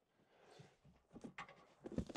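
Near silence, with a few faint short knocks in the second half.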